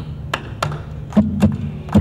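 Live folk band starting a song's instrumental intro: sharp percussive taps about three a second over low held bass notes, which grow stronger about a second in.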